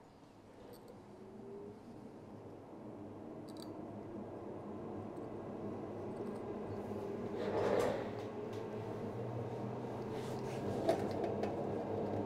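Faint clicks and light scraping of hand tools working at a heated iPhone logic-board sandwich as it is prised apart, over a low hum that slowly grows louder; a brief louder rustle about eight seconds in.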